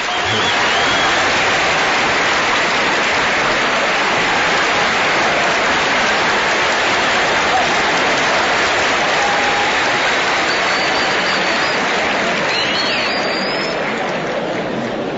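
Large concert audience applauding steadily and loudly, easing off slightly near the end.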